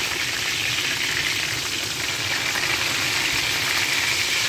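Kebab patties shallow-frying in hot oil in a pan: a steady sizzle.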